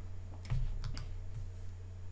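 A few light clicks of computer keys, irregular and close together about half a second to a second in, over a steady low electrical hum.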